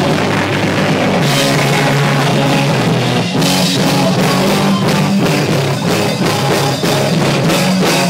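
Hardcore punk band playing live: electric guitar and bass over a fast drum beat.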